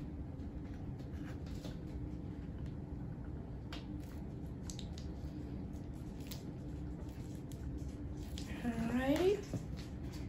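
A knife cutting through capped wax honeycomb along a wooden frame: faint, soft squishing and scattered small clicks over a steady low hum. Near the end a person's voice briefly rises in pitch.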